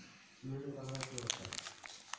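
A short held vocal sound at a low, steady pitch, starting about half a second in and lasting about a second, with a run of small crackling clicks through the second half.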